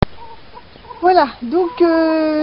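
Domestic hens clucking: a couple of short calls that bend up and down in pitch about a second in, then a longer held call near the end.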